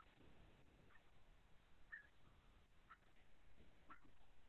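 Near silence: room tone, with a few faint, brief high clicks about once a second.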